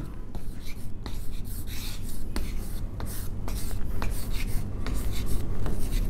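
Chalk writing on a blackboard: a steady run of short taps and scratches as letters are written.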